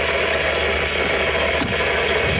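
Steady rushing mechanical noise from a vehicle being searched, with a single click about a second and a half in.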